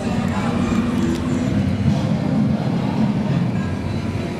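The Lightning McQueen character car's engine running with a deep, steady rumble that swells slightly through the middle, as the car moves off.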